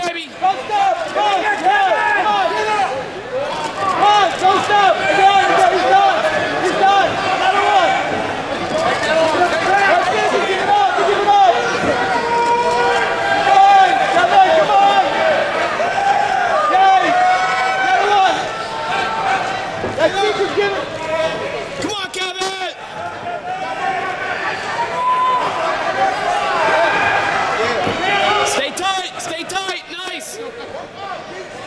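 Cageside crowd at an MMA fight, many voices shouting and cheering over one another at once. A few sharp knocks come through near the end.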